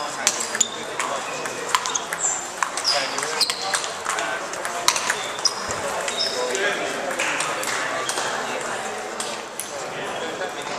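Table tennis balls clicking sharply off bats and table during a rally, with more clicks from other tables and a murmur of voices around; the clicks come thickly for about five seconds, then thin out.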